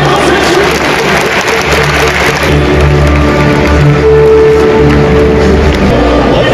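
Stadium public-address music with a steady bass line over a crowd applauding. The applause is heaviest in the first half.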